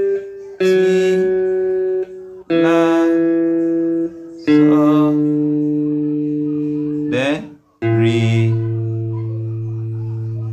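Guitar picking out the tenor-line breakdown slowly as single held notes: four notes one after another with short gaps, the third ringing about two and a half seconds, and a quick slide just after seven seconds before the last note.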